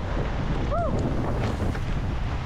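Wind buffeting the microphone aboard a sailing boat under way, a steady low rumble. A short pitched sound, like a brief voice, rises and falls about a second in.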